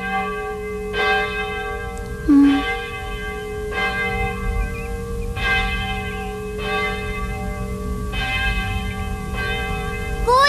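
A single church bell tolling slowly, one ringing stroke about every one and a half seconds, each fading before the next. It is a death knell announcing that someone else has died.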